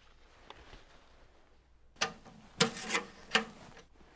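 A mailbox handled: the letter goes in quietly, then a few sharp clacks about halfway through as the lid is shut and the flag is flipped up.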